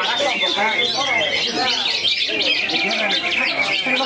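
Cucak hijau (green leafbird) singing a fast, unbroken stream of high chirps and twittering notes, over a background of people's voices.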